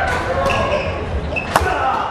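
Badminton rally: two sharp racket hits on the shuttlecock about a second apart, the second the louder, near the end, with short squeaks of court shoes on the wooden floor in between.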